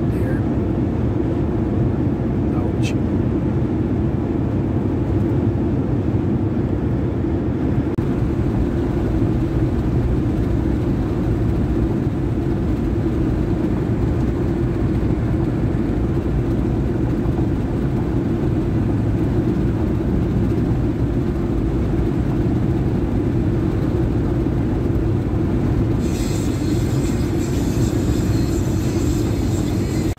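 Steady low rumble of tyre and wind noise inside a pickup truck's cab at highway speed. A higher hiss joins in for the last few seconds.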